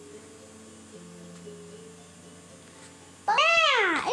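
Faint held notes of background music, then, near the end, one loud high meow that rises and falls in pitch.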